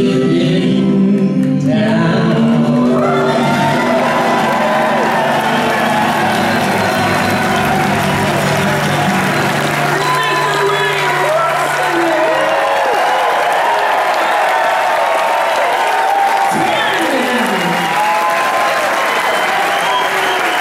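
Acoustic band's final chord ringing out, then a concert audience applauding and cheering with whoops, the clapping going on steadily to the end.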